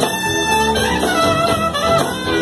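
A live band plays an instrumental passage with bass guitar, drums and horns, the melody moving through a few long held notes.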